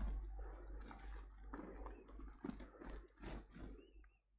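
Faint, irregular clicks and small knocks, about half a dozen spread over a few seconds, over a low steady hum that cuts off abruptly at the end.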